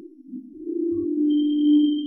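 A sustained low steady tone swells to its loudest near the end, with a fainter high whistling tone joining about a second in.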